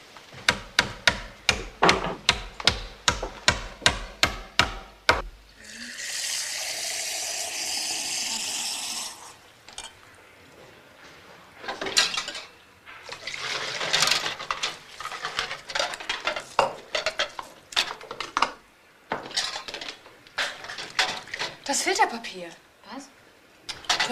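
A run of about fourteen sharp knocks at an even pace, some three a second. Then a kitchen tap runs for about three seconds, followed by the irregular clatter of plates and cutlery being washed and stacked in a dish rack at the sink.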